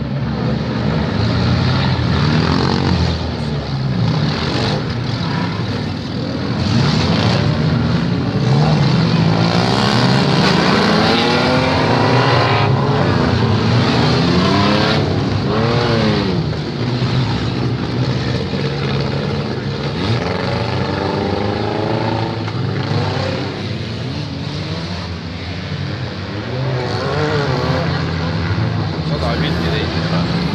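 Demolition derby cars' engines running and revving across the dirt arena, their notes repeatedly rising and falling, with the strongest revs from about eight to sixteen seconds in.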